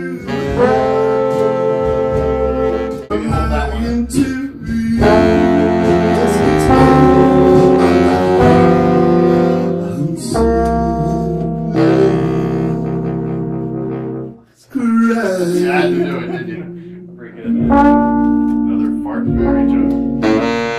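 Horn section of trumpet, tenor saxophone and trombone playing long held chords together, with an acoustic guitar strumming along; the chords break off briefly a few times, most sharply about fourteen and a half seconds in.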